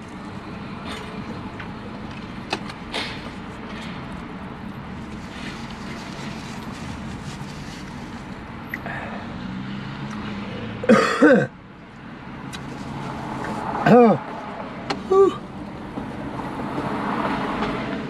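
A man coughing and clearing his throat in a few short, loud bouts, the reaction to the burn of a very hot, spicy chicken sandwich, over a steady low background hum.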